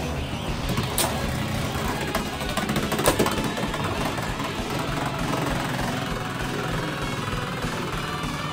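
Two Beyblade X tops spinning on the stadium floor, a steady whirring scrape, with sharp clicks about a second in and about three seconds in as they strike each other.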